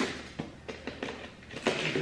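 A package being handled and opened by hand: a few short knocks and taps with scraping and rustling in between.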